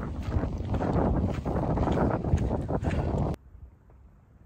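Gusty wind buffeting a phone's microphone, a heavy rumbling noise, as a thunderstorm approaches; it cuts off abruptly a little over three seconds in.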